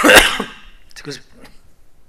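A man coughing into his hand: one loud, harsh cough at the start, then a few shorter, quieter throat sounds about a second in.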